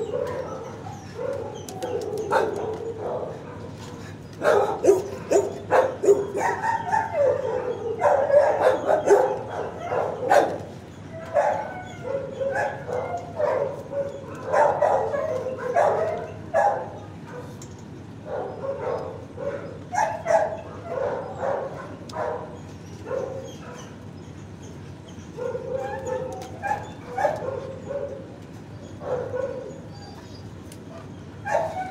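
Dogs barking over and over in runs of short calls, with brief quieter pauses between the runs.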